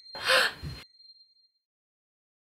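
A girl's sharp, breathy gasp, loud and under a second long, as she is grabbed from behind. A faint high ringing tone fades out behind it.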